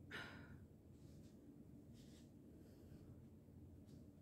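Near silence: room tone, with one faint short breath right at the start.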